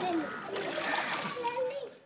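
Water and sludge splashing as an open drain is scooped out by hand, with voices, some of them children's, in the background.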